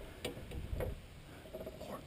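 Handling noise from a largemouth bass being worked in a landing net at the boat's side: two light clicks, with low rumbling of hands and net against the hull.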